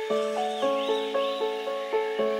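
Soft piano playing a steady flowing arpeggio, a new note about every quarter second. A high bird call of three rising-and-falling chirps sounds over it in the first half.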